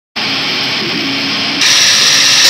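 A steady hiss of noise starts abruptly, with a faint low tone beneath it, and becomes louder and brighter about one and a half seconds in.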